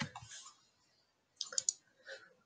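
Computer keyboard and mouse clicks: a short rustle at the start, then a quick cluster of three or four sharp clicks about a second and a half in.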